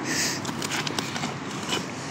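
Digging shovel pushed into the soil underfoot: a short scraping rush of dirt, then a few light clicks and crunches as the blade works deeper into the hole.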